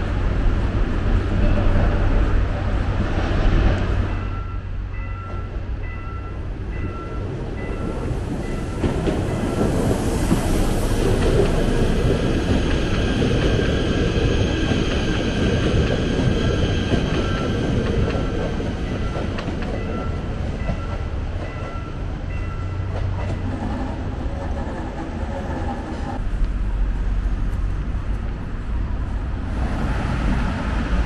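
Passenger train running past close by on the tracks: a steady rolling rumble of wheels on rail with faint, regularly repeating high squeaks or clicks from the running gear.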